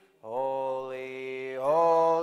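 Congregation singing a hymn a cappella in long held notes, starting after a brief breath pause; the pitch steps up about three-quarters of the way through.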